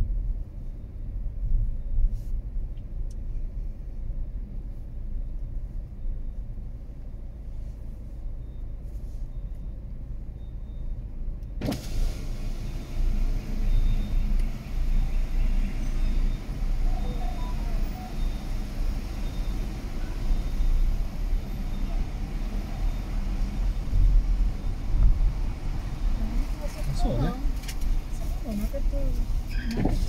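Slow-moving car heard from inside the cabin: a steady low engine and tyre rumble. About twelve seconds in, the outside traffic noise suddenly comes in much louder and fuller and stays that way.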